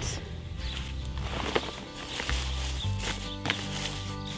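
Background music with low held bass notes that change a few times, over faint rustles and small clicks of comfrey leaves being pushed into a plastic sleeve around a tomato plant.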